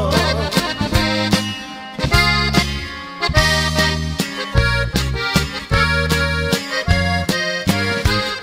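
Instrumental break in a Mexican ranchero song: accordion carrying the melody over held bass notes and a steady percussion beat, with no singing.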